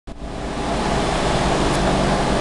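Steady rushing noise with a faint low hum, fading in over the first half second.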